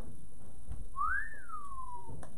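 A person whistling one short note, about a second long, that starts about a second in, rises quickly and then slides slowly back down.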